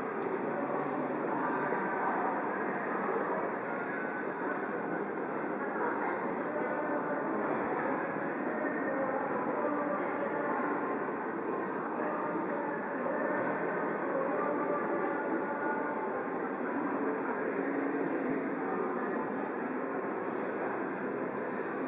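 Busy city crossing ambience: a steady hubbub of crowd voices and footsteps over a low traffic hum, with no single event standing out.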